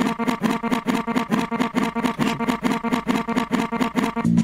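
Music from an Ableton session played back fast-forwarded: the sped-up track comes out as a rapid, even stutter of about seven hits a second. It gives way to normal-speed playback of the funky guitar-and-bass sample just after the end.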